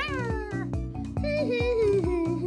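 A cartoon bush baby character's high squeal that falls in pitch at the start, over a bouncy children's music bed with a steady beat. About a second in, a hummed tune begins.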